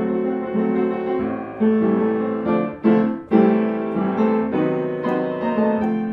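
A 1994 Kemble upright piano played with both hands: sustained chords and a melody, with a brief lift about three seconds in before fresh chords are struck.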